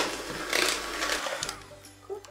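Electric hand mixer running, its wire beaters whisking a runny egg-yolk, sugar and melted-butter batter in a bowl. It starts abruptly and dies away after about a second and a half.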